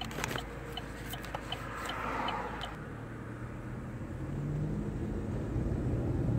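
Car interior noise: a steady low engine and road rumble. About halfway through, the engine tone rises as the car speeds up, and there are a few faint ticks early on.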